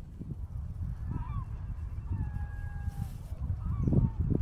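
Birds calling: a few short curving calls, then two long, slightly falling calls, over a low rumble of wind on the microphone.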